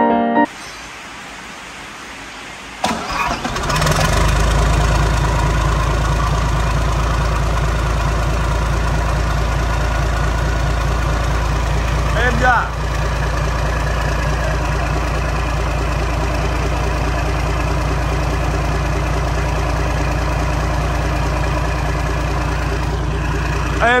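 Isuzu 6WF1 inline-six diesel engine cranked by its starter and catching about three seconds in, then idling steadily and smoothly with an even low rumble.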